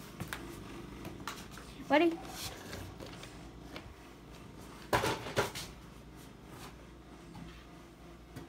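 A toy RC truck thrown down wooden basement stairs, landing with a quick clatter of three or so hard knocks about five seconds in.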